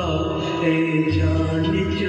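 A man singing a Hindi film song into a microphone, holding long notes over recorded backing music.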